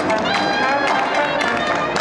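A walking street band plays a lively tune: trombone, trumpet and clarinet over a strummed banjo.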